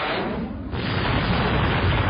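Cinematic logo-reveal sound effect: a swelling whoosh that dips briefly about two-thirds of a second in, then a loud, dense rumble with heavy bass.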